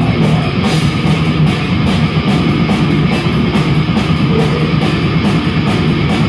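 A rock band playing heavy metal live: electric guitars, bass guitar and a drum kit together, loud and steady, with cymbal hits at a fast, even rate.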